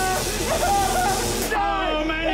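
Dramatised speech, a man's voice wavering in pitch, over a steady high hiss that cuts off suddenly about one and a half seconds in.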